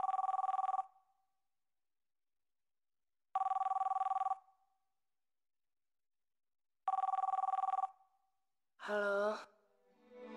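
Telephone ringing three times, each ring a fluttering two-tone burst about a second long, about three and a half seconds apart. A short voice sound follows near the end.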